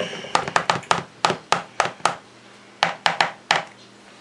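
Black plastic potato masher knocking against a plastic bowl as it works grated parmesan into mashed potatoes: a string of sharp, irregular taps, with a short pause in the middle.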